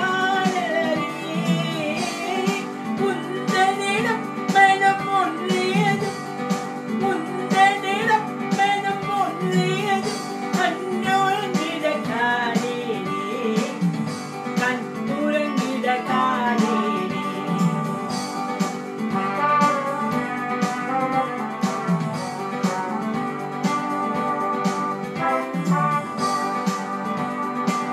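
Song played on an electronic keyboard with its built-in rhythm accompaniment keeping a steady beat, and a woman singing the melody over it.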